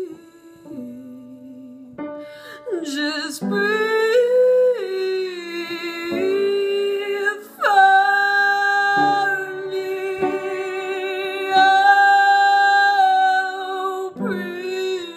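A woman singing long, drawn-out notes with a wavering vibrato and no clear words: soft at first, then full-voiced from about three seconds in, swelling to a strong, high held note from about eight seconds.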